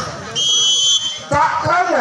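Volleyball referee's whistle blown once, a single high steady blast of about half a second, to end the rally after the ball lands. Commentator speech follows.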